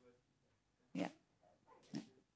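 Mostly quiet room tone with one short spoken "yeah" about a second in and a brief faint vocal sound near the end.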